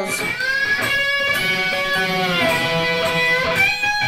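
Electric guitar played with a slide and a lot of delay, sliding up into long held notes several times as the phrase climbs the neck.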